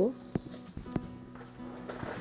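A metal spatula stirring potatoes in an iron karahi, giving a few sharp taps and scrapes against the pan, over a faint steady high-pitched tone.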